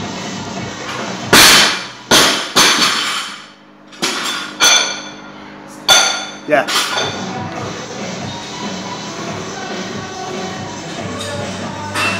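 Loaded barbell with bumper plates dropped from overhead onto the lifting platform, landing hard and bouncing twice. A few seconds later come several more knocks and clanks with a short metallic ring as the bar and plates are handled on the floor.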